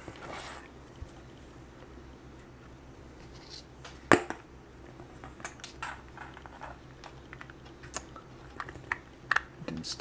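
Small scattered plastic clicks and rattles as a micro servo is handled and pressed into a 3D-printed plastic robot chassis, with one sharper click about four seconds in. A faint steady hum lies underneath.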